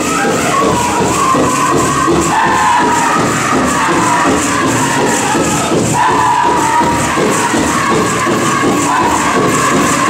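Powwow drum group singing high-pitched vocables over a steady drumbeat, for a women's jingle dress dance, with the metal cones on the dancers' dresses jingling.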